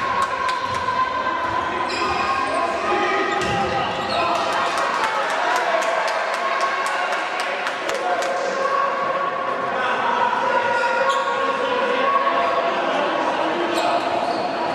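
A handball bouncing on a sports-hall floor, with a quick run of bounces in the middle, over shouting voices that echo in the hall.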